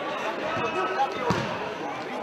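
Spectators chatting in a sports hall, with one thud of the futsal ball, kicked or bounced on the hall floor, a little over a second in.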